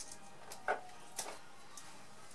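A few short, faint crinkles of a small chocolate's wrapper being picked open by a child's fingers, in a quiet room.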